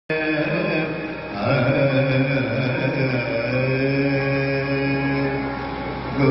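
Sikh kirtan: devotional singing of Gurbani hymns set to raag. A little over a second in, it settles onto a long held note.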